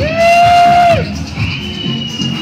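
Dance music and crowd noise from a street parade. A loud held note about a second long swells in and drops away at its end, the loudest thing here, and is followed by a thinner, higher steady tone.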